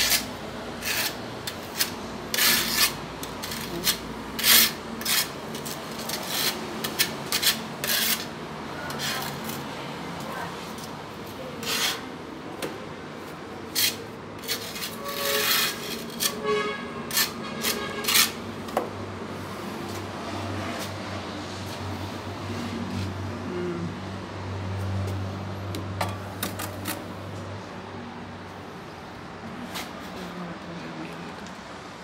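A steel trowel scraping cement mortar out of a bucket and across the back of a ceramic wall tile, buttering it for setting: a run of short, irregular scrapes through the first half or more. Later it goes quieter, with a low steady hum underneath.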